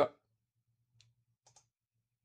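Faint clicks of a computer mouse selecting an item in an app: one about a second in, then two close together half a second later.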